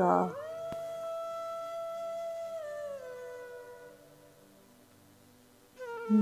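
Background music: a single long, held note that slides down slightly about three seconds in and fades out, leaving near silence until the end.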